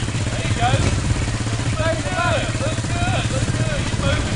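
Suzuki four-wheeler's engine running steadily at low revs as the ATV wades through deep, muddy water, with voices calling out over it.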